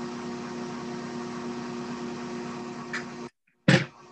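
A steady machine hum with an even hiss and a couple of held tones, which cuts off suddenly about three seconds in.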